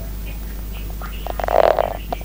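Diesel railcar running, a steady low rumble heard from inside the passenger cabin, with a short, loud rasping burst about one and a half seconds in.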